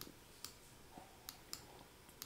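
A few faint, irregular clicks in near silence, several sharp little ticks spread across the two seconds.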